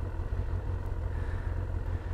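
Kawasaki ZX-6R's inline-four engine running in traffic, a steady low rumble under a haze of wind noise on the microphone.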